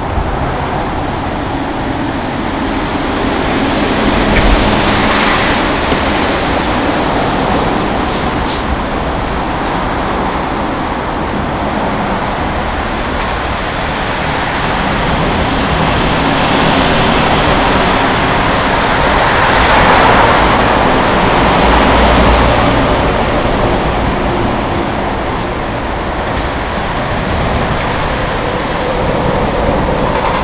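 Steady roar of road traffic on the bridge deck alongside the walkway, swelling as vehicles pass and loudest about two-thirds of the way through.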